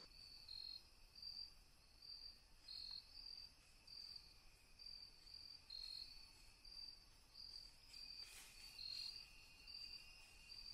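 Faint chirping of crickets, short high chirps repeating about twice a second at two slightly different pitches, with a fainter steady trill beneath.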